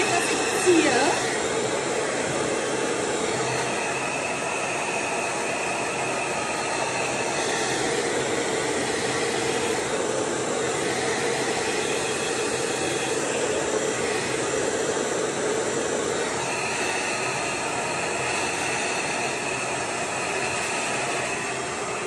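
Hand-held hair dryer running steadily, blowing close against the hair. A higher whistle in the airflow comes in twice, for a few seconds each time.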